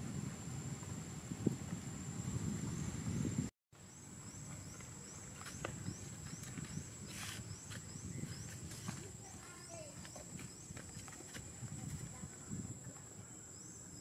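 Outdoor ambience. A low rumbling noise cuts off abruptly about three and a half seconds in. After that it is quieter, with a steady high-pitched whine, a short rising chirp repeating every half second or so, and scattered faint clicks.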